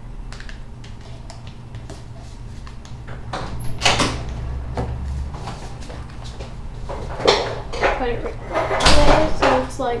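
A sheet of paper rustling and crinkling as a partly folded paper airplane is handled and lifted, with a loud rustle about four seconds in and denser rustling from about seven seconds on.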